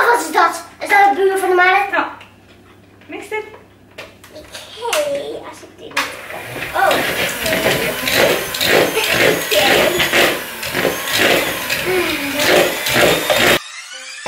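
Electric hand mixer whirring as its beaters work cake mix in a bowl. It starts suddenly about six seconds in, runs steadily and cuts off abruptly just before the end.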